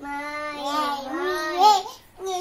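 A young child singing a long wordless note, held level at first, then wavering up in pitch and loudest just before it breaks off near the end.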